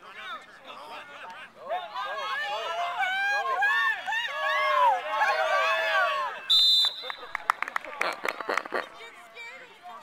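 Many high children's voices shouting and yelling over one another. About six and a half seconds in, a short shrill whistle blast, followed by a run of short sharp sounds.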